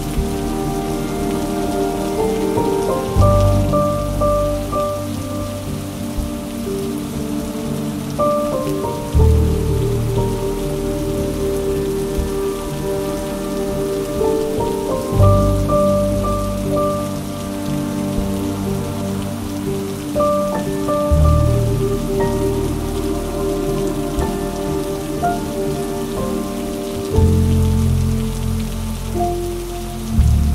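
Steady rain, mixed with slow, soft instrumental music. The music has long held chords, a bass note that changes about every six seconds, and a simple melody above.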